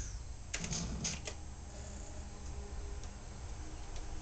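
Buttons on a Yamaha Motif synthesizer's front panel clicking as they are pressed, a quick cluster of clicks in the first second and a half and a few fainter ones later, over a steady low hum.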